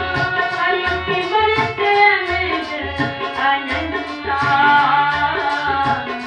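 A woman singing a Sikh devotional hymn (kirtan) to a harmonium, with tabla keeping a steady, even beat underneath.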